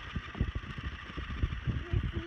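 Wind buffeting a phone microphone on a sailing yacht under way, in uneven low gusts over a steady hiss of wind and water.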